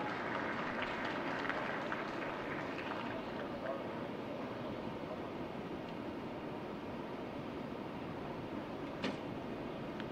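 Steady background noise of an outdoor archery range with faint murmuring voices, broken about nine seconds in by a single short, sharp snap: a recurve bow being shot.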